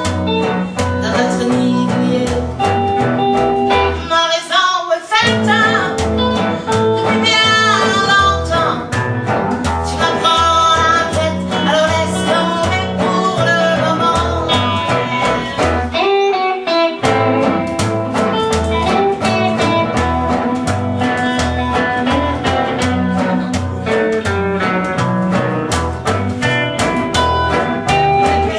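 Live swing-blues played on upright bass and guitars, with the bass walking a steady beat under a wavering lead line. The bass and rhythm drop out briefly twice, about four seconds in and again near sixteen seconds, leaving the lead line on its own.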